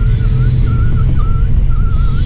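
Steady low rumble of a moving sleeper coach heard from inside the cabin, with a thin wavering tune running above it.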